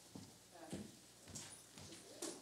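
Faint footsteps on a stage floor, about two steps a second, picked up at a distance by a lectern microphone.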